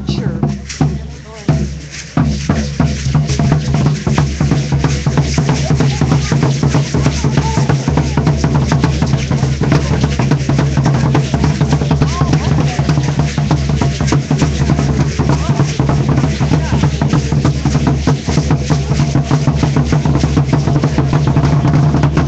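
Drumming and a dense, fast clatter of rattles accompanying Aztec ceremonial dancers. It gets louder about two seconds in.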